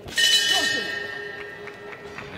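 Boxing ring bell struck once to end the round, with a clear high ring that fades slowly.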